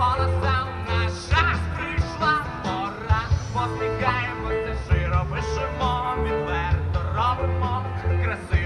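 Live rock band playing a song through a large stage PA: a singer with a wavering vibrato over held bass notes, guitars and regular drum hits.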